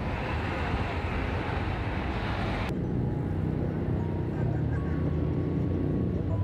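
Road traffic noise: a steady rush of passing vehicles that cuts off abruptly about three seconds in. It gives way to quieter street ambience with a low steady engine hum.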